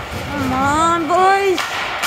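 A person shouting two long drawn-out syllables, the second climbing in pitch.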